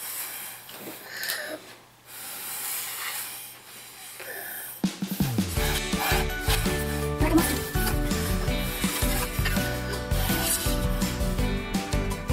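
Breathy puffs of air blown through plastic drinking straws, a soft hiss. About five seconds in, louder background music starts and runs over the rest.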